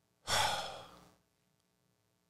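A man sighing: one breathy exhale into a close podcast microphone, loud at first and fading away within about a second.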